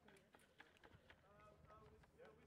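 Very quiet: faint voices from a few people talking, with a few light ticks among them.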